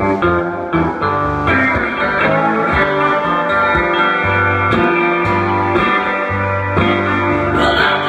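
Blues band playing live: a box-bodied electric guitar leads an instrumental passage over a steady bass line and occasional drum strikes.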